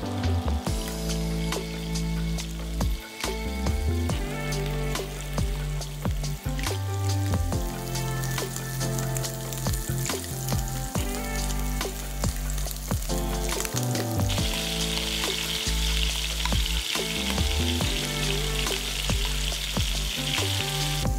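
Walleye cheeks frying in olive oil and butter in a nonstick skillet: a steady sizzle full of small pops and crackles that grows louder and hissier about three-quarters of the way through. A lo-fi music track with a bass line plays underneath.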